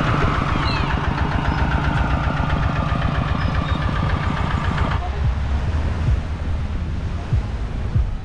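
Two-wheel walking tractor's single-cylinder diesel engine running with a steady, fast chug. It cuts off abruptly about five seconds in, leaving a lower, steady rumble.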